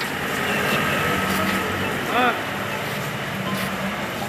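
A police van's engine running as it pulls away, under a background of indistinct voices, with a short wavering call about two seconds in.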